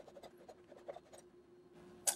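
Faint scratching strokes of a hand pull saw cutting into the thick plastic housing of a refrigerator water filter, thinning out a little past halfway.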